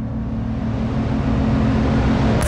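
A swelling rush of noise over a held low drone, growing steadily louder and brighter: an electronic riser building toward the start of the next song.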